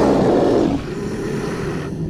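Dinosaur roar sound effect, loud at first and dropping away under a second in to a lower rumble.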